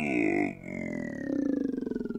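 A cappella singer's vocal sound effect of a machine powering down: one voice sliding slowly downward in pitch with a fast flutter, a slow wind down like a tired robot with a hangover.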